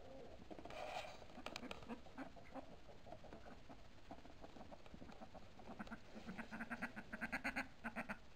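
Domestic ducks calling while feeding, with a rapid series of quacks near the end.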